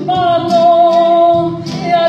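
Live church praise band playing with singing; a long note with vibrato is held through most of the stretch over the band.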